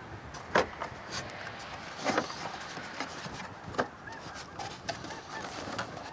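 Plastic air filter housing cover of a 2011 Chevy Traverse being lifted and wiggled free by hand: a few scattered clicks and knocks of plastic catching on surrounding parts, about a second and a half apart, with smaller ticks between.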